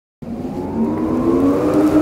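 A car engine revving, its pitch climbing, starting abruptly a moment in.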